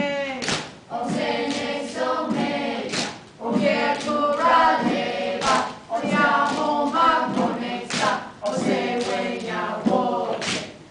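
A group of children and adults singing together in repeated phrases, each broken by a short pause about every two and a half seconds. Gourd rattles are shaken and struck in time with the song, giving sharp strokes, the strongest falling at the start of each phrase.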